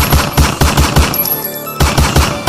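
Loud music, a rap beat with a rapid run of hard, low, gunfire-like hits, about six a second. The run breaks off just past the middle and starts again near the end.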